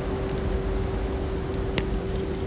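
A gym chalk reform pulled apart by hand, breaking with one sharp crack near the end. A steady low hum and hiss run underneath.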